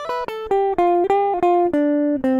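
Electric guitar with a clean tone, picking single notes of the C major scale in a run that steps mostly downward, about four notes a second.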